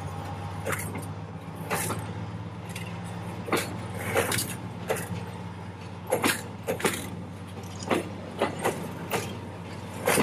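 Diesel locomotive engine running with a steady low hum as a freight train of hopper wagons rolls past. Over it come irregular sharp clacks of wagon wheels crossing rail joints and points, louder than the engine.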